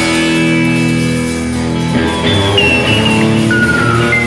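Rock music led by electric guitar holding sustained chords, with no drums, and a lead note sliding down in pitch in the second half.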